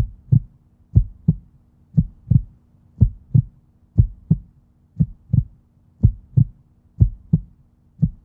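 Heartbeat sound effect: a low double thump, lub-dub, repeating evenly once a second over a faint steady hum.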